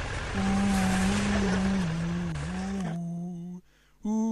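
A voice humming a slow tune in long held notes, stepping down and back up in pitch, over a steady rush of outdoor noise. The rush drops away about three seconds in, and the humming cuts off shortly after.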